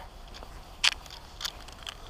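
Footsteps on a paved path strewn with dry leaves: three crisp steps about half a second apart, the first the loudest.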